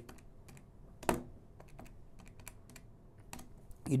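Sparse light clicks and taps at a desk while a sum is worked out by hand, with one sharper tap about a second in.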